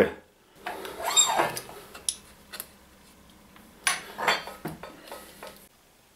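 Light metallic clicks, clinks and scrapes, scattered over several seconds, the sharpest about four seconds in with a short ring: the bevel stop set screw and tilting cutting head of a sliding mitre saw being adjusted by hand against a metal set square.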